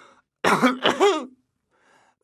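A man clearing his throat: two short, voiced ahems in quick succession about half a second in.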